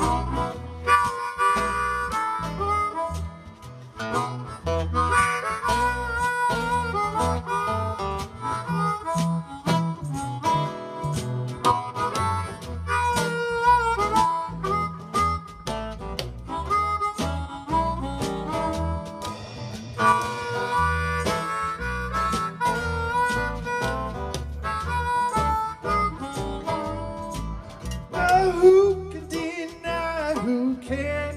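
Harmonica solo played through a vocal microphone, over a strummed acoustic guitar, bass and a steady drum beat in a live blues-rock band.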